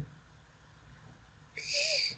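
A pause in Quran recitation: quiet room tone over a call line for about a second and a half. Near the end comes a short breathy hiss as the reciter starts the next word.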